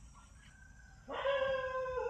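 An animal's long cry, holding one steady pitch, starts about halfway through and runs on for about a second.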